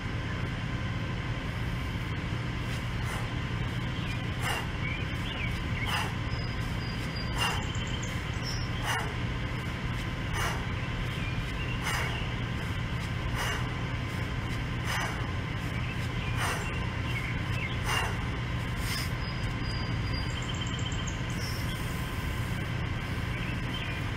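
A man's short, forceful exhales, one on each kettlebell swing, about ten of them, one every second and a half or so, over a steady low background hum.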